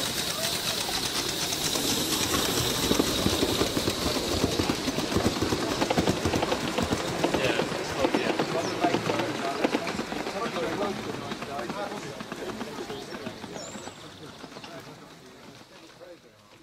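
Gauge 3 model train, a battery-electric tank locomotive with a rake of coaches, running along garden track with a dense clicking rattle from the wheels on the rails, over indistinct voices. The sound fades out over the last few seconds.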